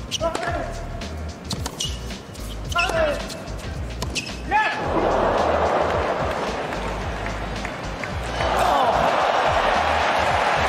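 Tennis rally on a hard court: sharp racket strikes and ball bounces with short sneaker squeaks. About five seconds in the stadium crowd breaks into cheering, which swells louder near the end.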